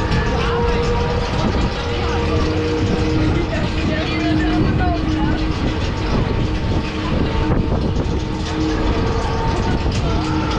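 Spinning funfair ride in motion, heard from a seat on board: a loud, continuous rumble with steady held tones, and brief voices of riders in the middle.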